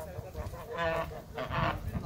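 Domestic goose honking twice, the second honk the louder.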